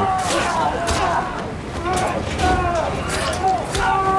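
Action-film soundtrack: voices in speech-like bursts over several sharp bangs and impacts.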